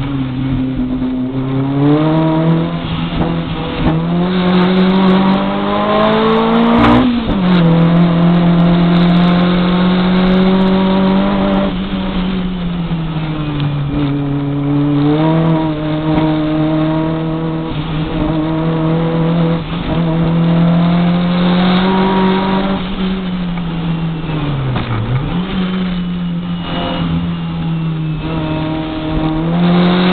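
Turbocharged VW Golf Mk2 race car engine at full throttle, heard from inside the cabin. The revs climb for the first several seconds and drop sharply at an upshift about seven seconds in. After that they hold fairly steady, with short dips as the driver lifts for the bends.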